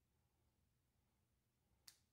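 Near silence, then a single short click near the end: a snip of small precision scissors trimming cured resin overpour from the edge of a glitter domino.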